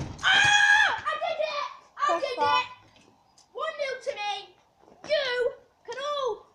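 Children's high-pitched shouting and squealing in five or six bursts, the first and loudest lasting most of a second, just after a sharp knock at the very start.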